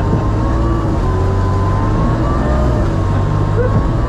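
Sherp amphibious ATV's diesel engine running steadily as it drives, a continuous low drone with a faint wavering whine above it.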